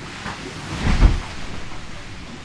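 Heard from inside the cabin of a Class 40 racing sailboat under way: a steady rush of water and wind noise, with a brief louder surge about a second in.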